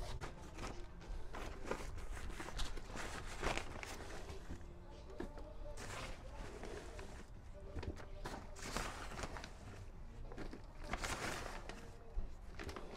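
Potting soil being scooped by hand from a bag into a plastic bucket: faint scattered scrapes, rustles and clicks, with a few footsteps.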